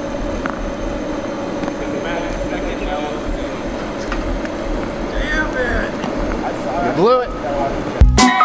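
Steady outdoor background noise with a constant low hum, and short bits of voices about five seconds in and again near the end.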